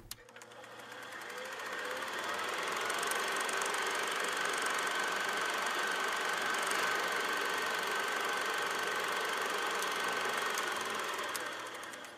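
Steady mechanical running with a rapid fine clatter and a faint steady whine, fading in over the first two seconds and fading out near the end.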